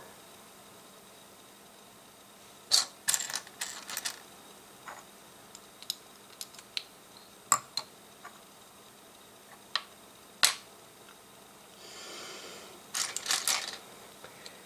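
Plastic LEGO pieces clicking and clattering on a tabletop as they are picked up, set down and fitted together. A quick run of clicks comes a few seconds in, then scattered single clicks, then a brief rustle of pieces and another quick run of clicks near the end.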